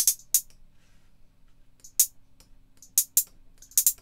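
Roland TR-808-style closed hi-hats from a drum machine, some steps pitch-tuned down: a handful of short, crisp ticks at uneven spacing, with a couple of quick pairs of repeats near the end.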